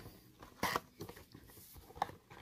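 Cardboard trading-card box (Panini Chronicles) being pulled open by hand: faint cardboard rustling with one short, louder rustle about two-thirds of a second in.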